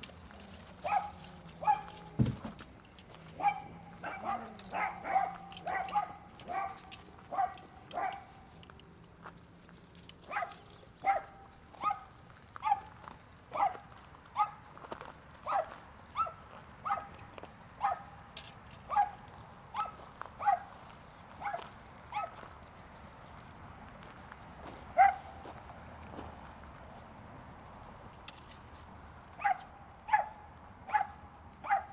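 A dog barking in play: a long run of short, sharp, fairly high barks, about one or two a second, that stop for a few seconds near the end before starting again.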